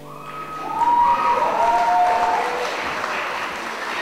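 An audience applauding as a song ends, building up about half a second in, with a few long high cheers over the clapping in the first couple of seconds.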